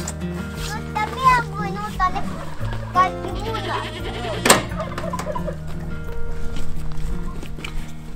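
Background music with goats bleating, and a single sharp click about halfway through as the barn door is unlatched.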